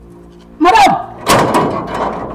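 Metal gate being unlatched: a short exclamation with a sliding pitch about half a second in, then a loud rattle and scrape of the steel bolt and gate about a second later. A low steady music bed runs underneath.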